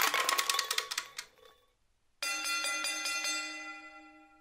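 A rapid clatter of sharp clicks that dies away within about a second and a half. After a short pause, a ringing, bell-like musical chord starts and fades out.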